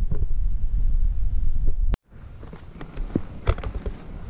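Wind buffeting the microphone, a low rumble that cuts off abruptly about two seconds in, followed by much quieter outdoor sound with a few faint knocks.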